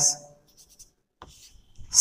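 Chalk scratching on a blackboard in a few faint, short strokes as the letter C is written.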